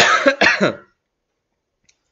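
A man coughing: three short coughs in quick succession.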